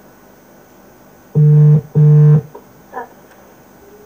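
Phone ringtone: two short, loud electronic notes in quick succession about a second and a half in, like a synthesizer tone.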